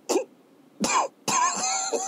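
A man clearing his throat with a short cough, then a harder cough about a second in, followed by a drawn-out voiced sound near the end.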